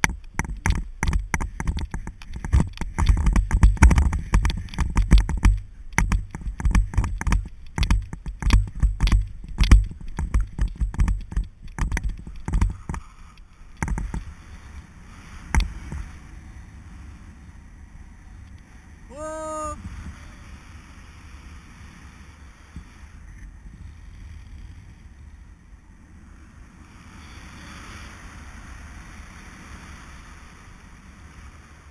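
Wind buffeting and irregular thumps on a head-mounted action camera through a paraglider's pull-up and launch, loud for the first dozen seconds. Once airborne this eases into a quieter, steady wind rush, with a brief pitched call about nineteen seconds in.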